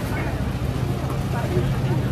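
Busy street-market ambience: scattered voices of passers-by over a steady low mechanical hum.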